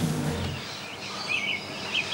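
Short bird chirps repeating in the background ambience, starting about a second in, after a music cue dies away about half a second in.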